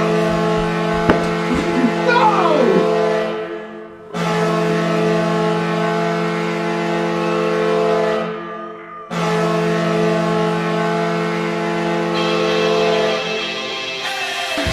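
Hockey arena goal horn sounding in three long, steady blasts, each cut off sharply, with excited shouting over the first.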